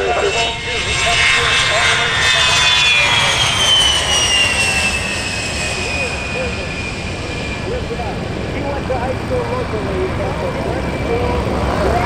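The twin General Electric TF34 turbofans of an A-10 Thunderbolt II at takeoff power as it lifts off and climbs away. A high whine sits over the jet noise and falls in pitch as the aircraft passes, from about two to six seconds in.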